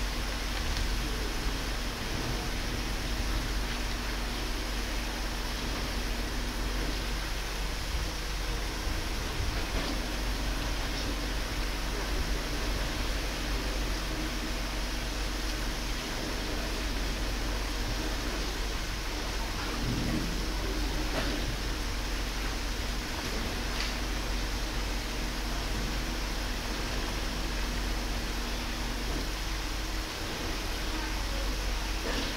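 Steady background hiss with a faint low hum underneath and a few faint ticks; no distinct sound stands out.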